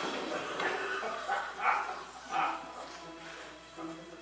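The soundtrack of a video played back over a hall's loudspeakers: music with short, high, pitched calls about once a second.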